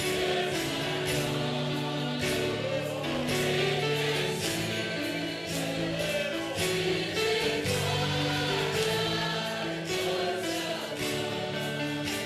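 A choir singing Christian music, with long held chords over a steady low note.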